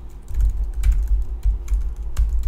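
Typing on a computer keyboard: a quick, unevenly spaced run of keystrokes.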